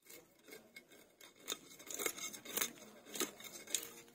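A puti fish being cut against an upright bonti blade, a run of short crisp scraping cuts and clicks, irregular, with a few louder ones in the second half.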